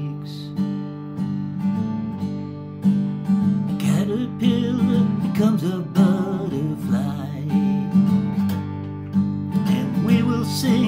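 Acoustic guitar strumming chords through an instrumental break in a slow ballad, with no singing.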